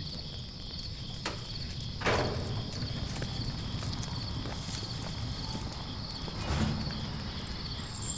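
Crickets chirping steadily in the background, with a few scattered knocks and thuds, the clearest about two seconds in and again near the end.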